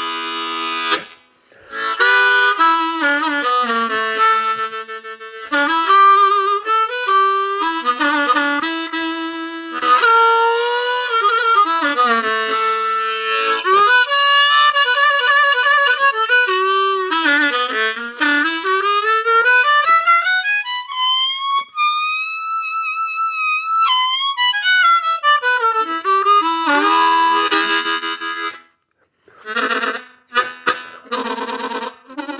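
Diatonic harmonica played solo: a run of notes bent down in pitch and released back up. About two-thirds of the way through it makes one long slow glide up to a held high note.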